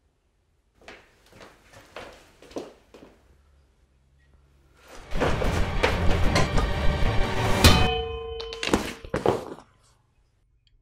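A few soft knocks, then a loud, dense scuffle with music, in which a metal object is struck with a clang that rings on for about a second, followed by a couple of thuds as the struggle ends.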